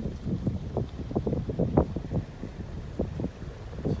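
Wind buffeting the microphone: a low rumble broken by irregular gusts.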